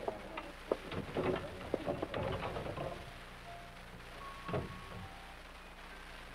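Radio-drama sound effects of a phone booth and payphone: a run of small clicks and knocks, then a few short tones and a final knock.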